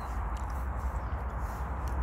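Steady low rumble and hiss of outdoor background noise, with a few faint ticks.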